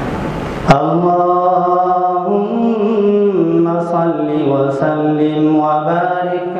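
A man's voice chanting a religious recitation in long, drawn-out melodic notes with slow rises and falls in pitch. A sharp click comes under a second in, where the sound cuts to a cleaner recording.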